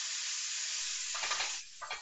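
Diced boneless chicken thigh sizzling as it goes into a frying pan preheated on high heat with no oil. The hiss is steady, then dies down about one and a half seconds in.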